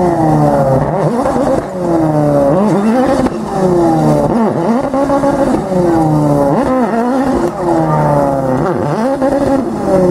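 Ford Fiesta RS WRC's turbocharged four-cylinder engine revving hard over and over, each burst rising sharply then sagging, about every two seconds, as the car, stuck off the road against the banking, tries to drive itself free.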